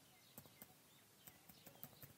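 Faint, irregular keystrokes on a computer keyboard, several key clicks as a word is typed.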